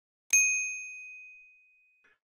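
A single bright notification-bell 'ding' sound effect, marking the subscribe animation's bell icon being switched on. It strikes once and rings on one high tone, fading away over about a second and a half.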